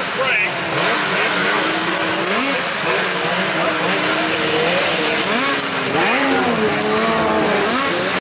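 Several race snowmobiles' two-stroke engines revving up and down as the sleds accelerate and back off over the moguls and jumps. Several pitches rise and fall at once and cross each other, the revving sharpest about six seconds in.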